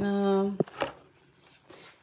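A woman's voice holding a steady, drawn-out hesitation sound for about half a second, followed by two light clicks and then quiet room tone.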